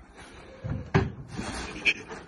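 Plastic wheelie bin lid being handled: two sharp knocks, one about a second in and one near the end, with scuffing between.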